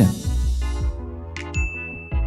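Chime sound effect marking a section change: a bright ding that rings on over a low bass tone, with a sharp click and a high steady tone about one and a half seconds in.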